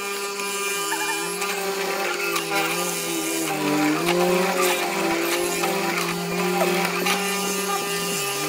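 Electric hollow-chisel mortiser running and cutting a mortise into a timber beam, its motor hum sagging and wavering in pitch as the chisel and auger plunge into the wood, most clearly about halfway through.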